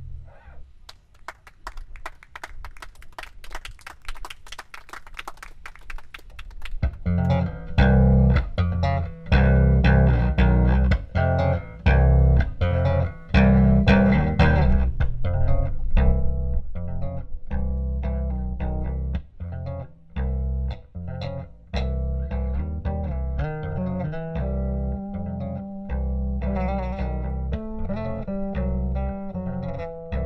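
Live instrumental music with an electric bass guitar, amplified through stage speakers: a quiet passage of rapid picked notes, then about seven seconds in a loud, bass-heavy groove comes in and carries on.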